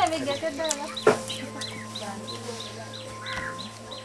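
A bird peeping high and regularly, about three peeps a second, with a single sharp knock about a second in.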